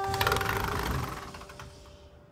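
A metal-framed sliding door rolled open along its track in a quick, dense clatter that fades over about a second and a half, over a single held acoustic guitar note.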